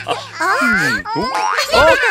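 Cartoon sound effects with springy pitch glides sliding down and up, mixed with a high cartoon character voice, as a backing song cuts off at the start.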